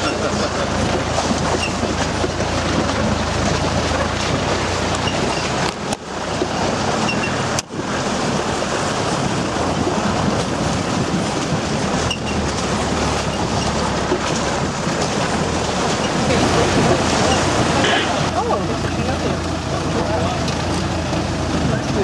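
A 4x4's engine running as it drives along a muddy, rutted dirt track: a steady low drone under a constant noisy rush.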